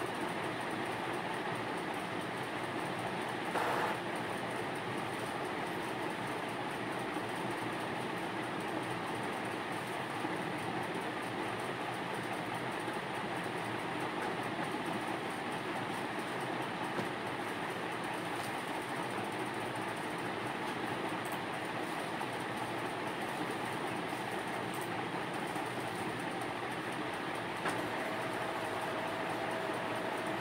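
A steady, even rushing background noise, with one short knock about four seconds in and a few faint ticks later.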